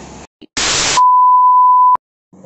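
Television test-pattern sound effect: a burst of loud TV static hiss for about half a second, then a steady 1 kHz test-tone beep held for about a second that cuts off abruptly.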